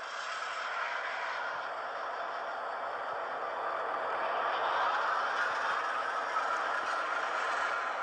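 Simulated diesel locomotive engine start-up and running sound from the Bachmann EZ App, played through an iPod touch's small speaker, so it is thin with no bass. It builds a little over the first few seconds, then runs steadily.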